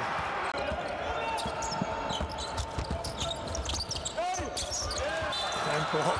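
Live basketball game sounds: the ball bouncing on the hardwood court, sneakers squeaking, and a few brief shouts from the players.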